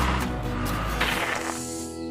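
Low engine rumble of a cartoon backhoe loader pulling up, which cuts off about a second in. Music with held notes comes in after it.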